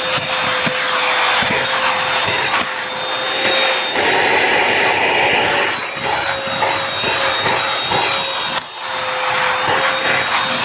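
Bissell 3-in-1 stick vacuum running, its nozzle being pushed over carpet and a rug: a steady motor whine over loud suction noise. About four seconds in, the whine drops out for a second or two and the rushing noise gets brighter.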